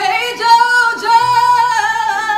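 A woman singing one long, high held note with a slight waver, in a soulful ballad.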